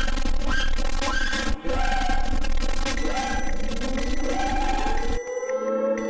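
A loud, harsh, distorted sound effect with warbling pitched tones and a rising glide near its end, lasting about five seconds with a brief dip about a second and a half in. It cuts off abruptly into soft, sustained synthesizer logo music with chiming tones.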